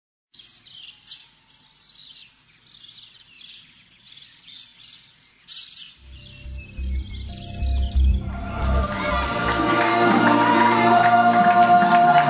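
Birds chirping for the first half. About halfway through, music comes in with a low pulsing bass and builds, growing louder and fuller near the end.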